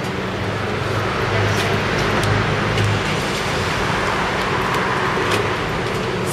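A car engine idling under a steady rumble of vehicle noise, with a low hum in the first half.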